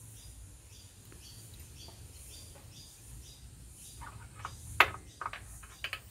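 Hand-handling noise at an engine's distributor: a few sharp metallic clicks and knocks in the second half, one louder click about three-quarters of the way through, over a low steady hum.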